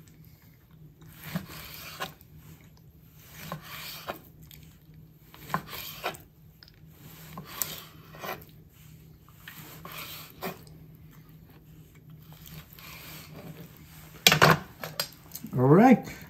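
Chef's knife slicing raw liver thinly on a wooden cutting board: each stroke ends in a light knock of the blade on the board, about one every second or two. Near the end there is a louder knock.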